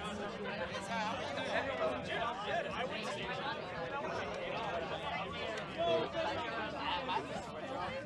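Chatter of a small crowd: many voices talking over one another at once, with no one voice standing out.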